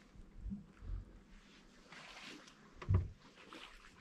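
A few faint knocks and bumps of people and gear shifting in a small boat, with a soft rustle about two seconds in.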